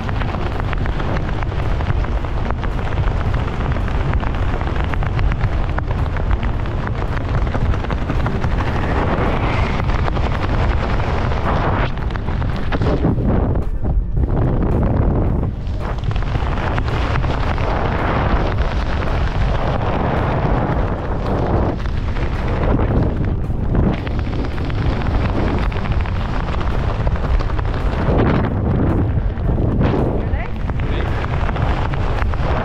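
Wind buffeting the microphone of a hand-held action camera during a tandem parachute descent under canopy: a loud, steady rumble that eases briefly a few times.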